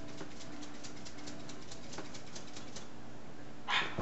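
Scissors snipping rapidly: a quick run of light clicks, about six a second, that stops a little before the end. It is followed by a short, louder rustling hiss.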